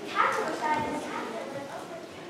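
An actor's voice speaking lines in a stage play, in two short phrases in the first second.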